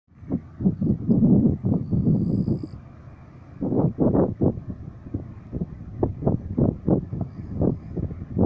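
Wind buffeting the microphone in uneven low rumbling gusts, with two short lulls. A faint, thin high whistle sounds for about a second early in the gusts.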